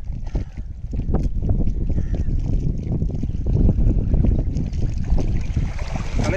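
Wind rumbling on the microphone, with shallow sea waves washing up on the sand.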